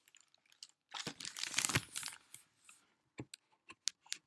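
Close handling noise: a loud rustle lasting about a second, starting about a second in, then a few sharp clicks near the end as the camera is moved and a drinking glass is picked up.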